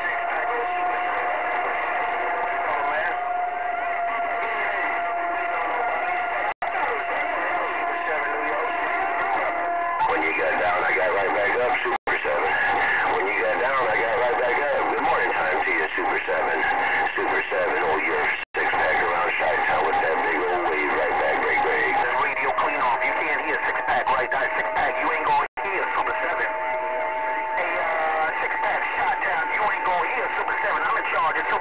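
Galaxy radio receiver playing a crowded channel of distant long-distance skip traffic: several stations talking over one another, garbled and thin, with steady whistle tones over the voices. The audio cuts out to silence for an instant four times.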